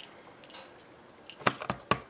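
Clear acrylic stamp block with a photopolymer stamp being tapped repeatedly onto an ink pad to ink it. After a quiet start, a quick run of light clicks begins about one and a half seconds in.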